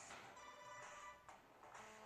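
Mobile phone ringtone playing a faint melody of changing notes; the phone is ringing with an incoming call.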